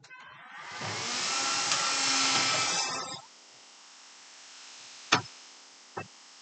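Wet glass writing board being wiped down by hand, a rubbing sweep with a squeak in it that lasts about three seconds. A single sharp knock follows a couple of seconds later.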